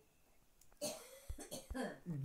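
A man's short cough, clearing his throat about a second in, much softer than his speech.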